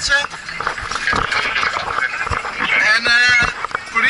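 People's voices talking inside a moving fire engine's cab, with a loud raised voice about three seconds in.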